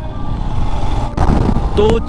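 Royal Enfield Himalayan motorcycle's 411 cc single-cylinder engine running steadily while riding, a low rumble mixed with road and wind noise that swells a little in the middle.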